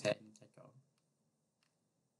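A short spoken word, then a few faint computer mouse clicks in quick succession, followed by near silence.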